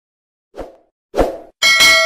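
Sound effects for the end-card buttons: two short pops, about half a second and a second in, as on-screen icons pop up, then a bright bell-like ding near the end that keeps ringing.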